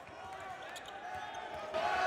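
Faint thumps of a basketball being dribbled on a hardwood court, over low arena background noise.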